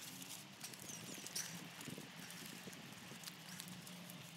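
Faint wet squelching and patting of soap lather as hands scrub it over a bare scalp, face and chest, in short irregular bursts.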